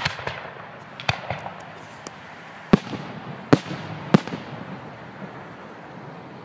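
Aerial fireworks bursting: a sharp bang at the very start, another about a second in, then three loud bangs in quick succession between roughly the third and fourth seconds, each with a short echo and some smaller pops in between.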